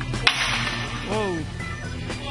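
A sharp crack about a quarter second in, followed by a hiss lasting under a second, then a brief pitched sound that rises and falls, over background music.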